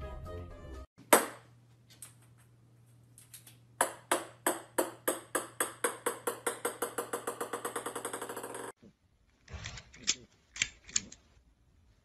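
A small ball bouncing on a hard wooden floor, the bounces coming faster and faster and slowly weakening for about five seconds, as a bounce does when it dies away. It is preceded by a single sharp knock about a second in and followed by a few light clicks near the end.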